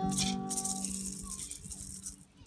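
The last moments of a Guarani Mbya choir song with guitar and fiddle: a rattle shake near the start, then the final held note of voices and strings dying away, nearly gone by about a second and a half in.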